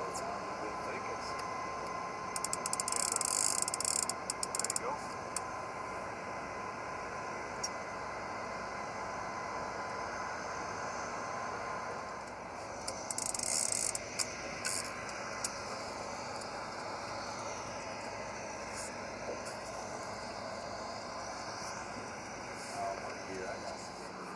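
Fishing reel clicking in short rapid bursts as line is worked, about three seconds in and again around thirteen seconds, over a steady mechanical hum and water noise on the boat.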